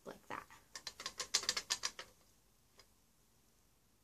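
A quick run of light clicks and rattles, about eight a second for some two seconds, then a single faint click.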